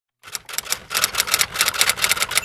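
A rapid run of typewriter keystroke clicks, about nine a second: a typing sound effect under the channel's logo intro.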